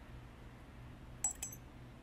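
Two quick metallic clicks with a brief high ring, about a quarter of a second apart and a little past halfway through, from a steel needle holder handling a suture needle. A faint low hum runs underneath.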